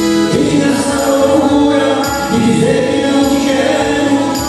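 A small band playing a song live: electric guitar and keyboard with a tambourine, a steady, continuous passage between sung verses.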